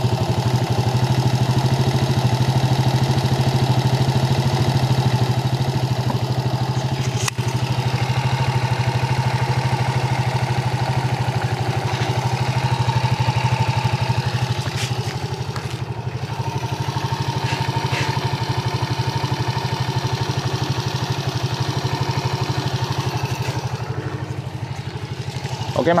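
Suzuki Shogun motorcycle's single-cylinder four-stroke engine idling steadily, with its loose centrifugal clutch shoes and wobbling clutch housing repaired, the fault that had made it knock.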